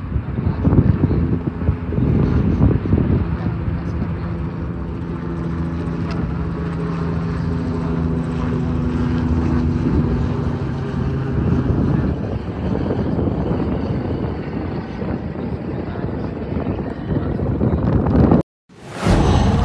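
Embraer KC-390 Millennium military transport jet taking off and climbing away, its twin turbofan engines at takeoff power: a loud, steady engine noise with a low hum that holds for about the first twelve seconds.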